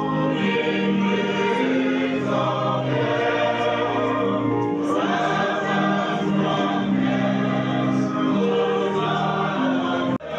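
A group of voices singing a hymn together in long, held notes, with the melody moving slowly from note to note.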